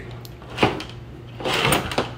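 Wires with plastic splice-tap connectors being handled and set down on a tabletop: a short clack about half a second in, then a longer rustle near the end.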